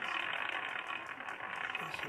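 Prize wheel spinning, its pointer ticking lightly against the pegs, over a steady murmur of room noise.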